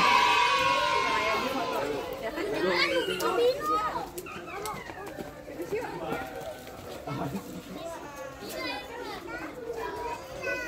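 Unclear voices of children and adults chattering in short bursts. A loud, long voiced cry carries into the start and fades away over the first second or two.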